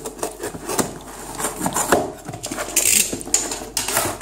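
Cardboard shipping box being opened: a utility knife slitting the packing tape and the flaps pulled open, with irregular scrapes, clicks and rustles of cardboard and a brief louder hiss about three seconds in.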